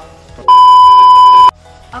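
A single loud, steady electronic beep lasting about a second, starting and cutting off abruptly.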